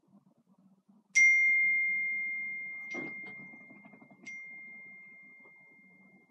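A bell-like ding: one clear tone struck about a second in and left ringing as it slowly fades, then struck again more softly about three seconds later. There is a faint knock between the two strikes.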